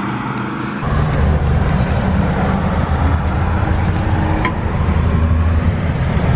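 Road traffic noise, with a vehicle engine rumbling low from about a second in and a few faint clicks.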